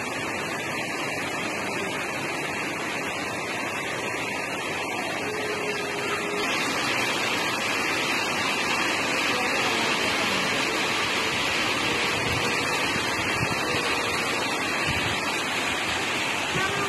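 Steady rushing of water, a little louder from about six seconds in.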